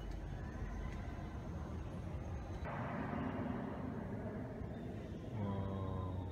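Steady low background rumble of room ambience, with a faint short pitched sound near the end.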